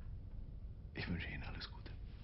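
A short, quiet spoken phrase about a second in, over a steady low room hum.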